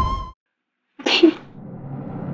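Background drama music stops abruptly, leaving about half a second of silence; then, about a second in, a single short, sharp breathy sound, after which soft music faintly begins again.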